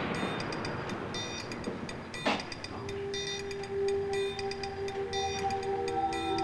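Horror-film soundtrack: a rushing noise fades over the first two seconds, a single sharp hit comes a little past two seconds in, and then low, steady notes of suspense score music are held.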